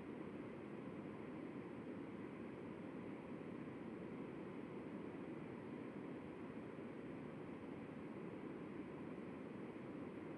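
Faint, steady low hiss with nothing else: the video-call audio has dropped out, leaving only line noise.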